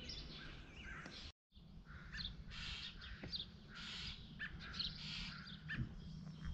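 Small birds chirping and calling, faint, in short repeated chirps and trills over a quiet outdoor background; the sound drops out completely for a moment about one and a half seconds in.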